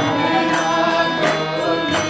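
Devotional kirtan-style music: a harmonium holding steady sustained chords while tabla strikes keep a regular beat about every 0.7 seconds, with a chanted melody.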